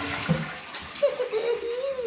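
Wall-hung toilet flushing from its dual-flush wall plate, water rushing into the bowl, with a man laughing briefly over it in the second half.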